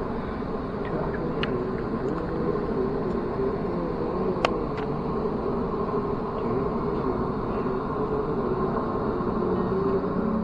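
Steady running noise inside an Adelaide Metro suburban train carriage: a low rumble with a faint steady hum, and one sharp click about halfway through.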